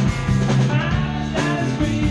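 Live rock band playing a song, with electric guitar and a drum kit keeping a steady beat.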